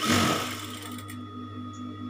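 Industrial sewing machine running a short burst of stitching lasting about a second, then settling back to a steady electric hum.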